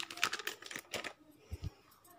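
Handling noises: a quick run of clicks and rustles, then two soft low thumps about one and a half seconds in.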